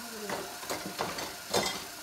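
Dishes being handled in a sink of water: water sloshing, with a few short clinks and knocks of dishware, the loudest about one and a half seconds in.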